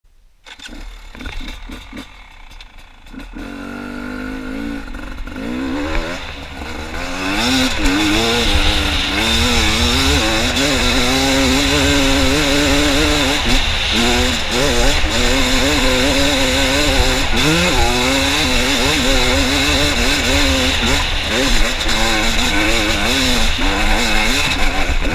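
2016 Beta 300 RR Race Edition two-stroke single-cylinder enduro motorcycle under load on a rocky hill climb, its engine note rising and falling constantly with the throttle. It starts quiet and grows louder over the first several seconds, then runs loud and hard.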